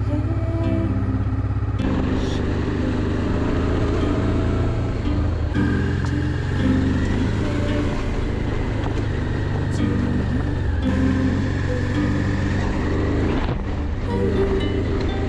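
Honda Africa Twin RD04's V-twin engine running steadily under way, heard under a background song.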